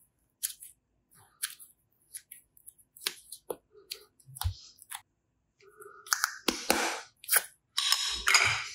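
Hands handling soft foam clay and plastic pieces over a glass bowl: scattered sharp clicks and taps, then a longer rustling, squishing stretch near the end.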